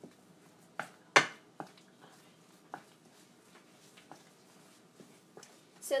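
Wooden spatula knocking and tapping against a stainless steel skillet while breaking up raw ground turkey: about six sharp, irregular clicks, the loudest about a second in.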